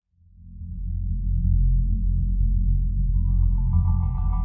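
Background music: a deep bass drone swells up from silence, and higher sustained notes come in over it about three seconds in.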